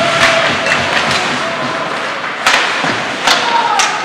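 Ice hockey play in an echoing arena: a few sharp knocks of sticks and puck on the ice and boards, the loudest in the second half, over a steady hall noise with short calls from players.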